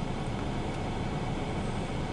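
Steady low rumbling background noise with no distinct events, in a pause between spoken words.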